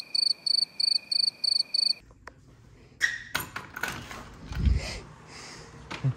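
A high-pitched chirping, about three chirps a second, that cuts off abruptly about two seconds in. Then a few sharp knocks and clicks and a dull thump.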